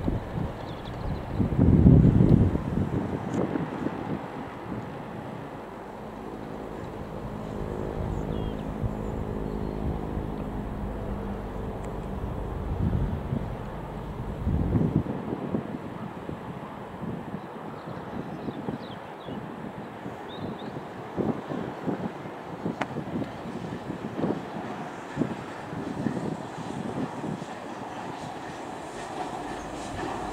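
LMS Princess Coronation class steam locomotive 46233 Duchess of Sutherland, a four-cylinder Pacific, heard working a train. In the second half its exhaust beats come as sharp irregular chuffs, closer together as it approaches. There is a loud rush about two seconds in.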